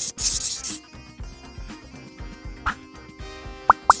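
Cartoon pencil-scribbling sound effect: a scratchy hiss for the first moment or so, over light background music that carries on afterwards. Near the end come two quick rising whistle-like sweeps.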